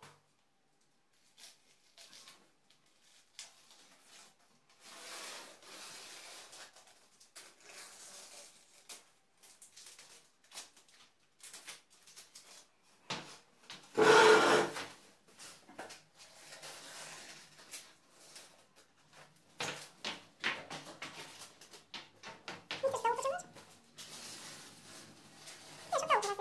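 Masking tape being peeled off freshly painted walls, giving irregular rasping, tearing strips of sound. About halfway through comes one much louder, broader burst, and near the end there are a few short pitched sounds that bend up and down.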